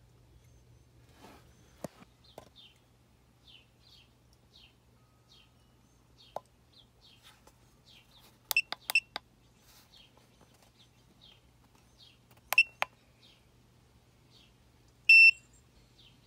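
Electronic beeper of a KONNWEI KW208 battery tester: short key-press beeps in two quick clusters as its buttons are pushed, then one longer, louder beep near the end as the battery test finishes. Faint repeated chirps sound in the background.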